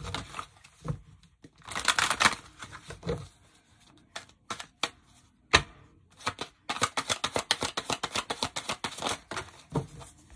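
A deck of oracle cards being shuffled by hand: a burst of quick card clicks, a quieter pause with a few taps, then a long run of rapid clicks in the second half.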